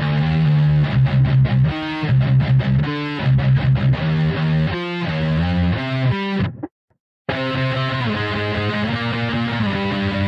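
Distorted electric guitar tuned to C standard playing a fast palm-muted metal riff on the low strings. About two-thirds of the way through, the sound cuts out completely for under a second, then a different riff starts with longer, ringing notes.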